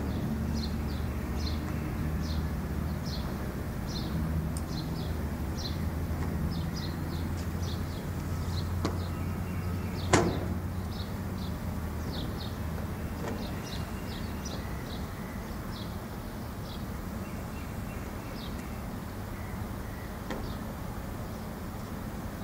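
A steady low hum under a long run of short, high chirps, about two or three a second, with one sharp click about ten seconds in.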